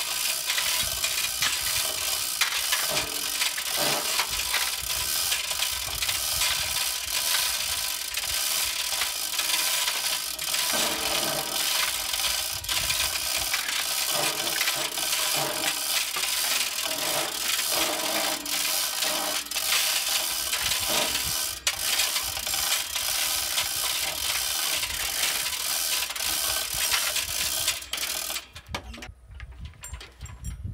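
Manual chain hoist ratcheting with a dense run of clicks as it lifts an engine out of a car, cutting off abruptly near the end.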